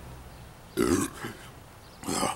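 A man's single burp a little under a second in, lasting about half a second, brought on by the fizz of the carbonated beer he has just drunk.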